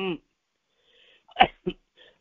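A man's speech stops just after the start; after a short pause comes one sharp, brief vocal burst from him, like a sneeze, followed by a smaller second one.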